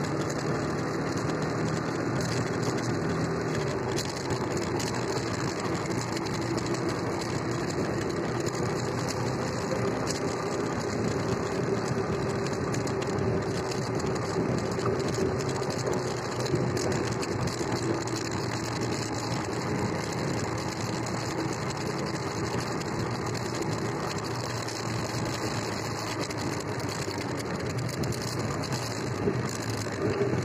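Kuba X Boss motorcycle engine running steadily at low speed in traffic, its note drifting gently up and down, under a constant rush of road and air noise.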